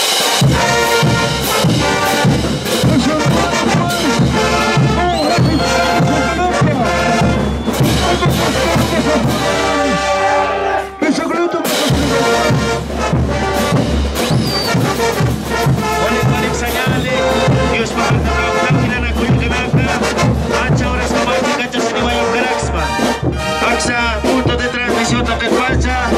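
Bolivian brass band playing live: brass horns carrying the melody over steady bass drum beats and clashing hand cymbals, with a brief break in the drums about eleven seconds in.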